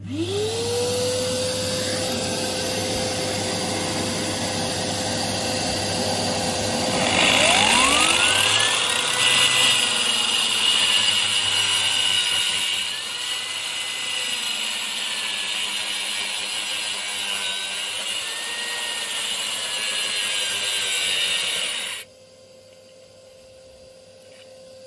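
Parkside PMNF 1500 A1 wall chaser with twin diamond blades: the motor spins up to a steady whine, then the blades cut a groove into a brick wall, louder for a few seconds in the middle. The tool cuts off suddenly near the end.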